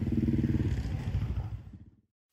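A small vehicle engine running with a rapid pulsing beat, dying away near the end.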